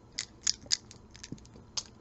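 A few faint, sharp clicks from a small wooden pull-string cow toy being handled, its loose strung wooden parts clacking together.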